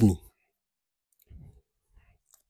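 A man's spoken word ending, then near silence broken by a faint short mouth click or breath about a second and a half in.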